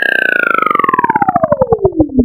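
Electronic background music ending in a pitched synth tone that glides steadily downward while its pulsing slows, like a tape-stop effect.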